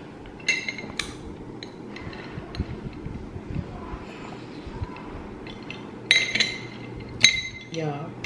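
Glass drinking straw clinking against ice cubes and the side of a tall drinking glass as it is stirred: two bright ringing clinks about half a second and a second in, then a quieter stretch, then a cluster of clinks about six to seven seconds in.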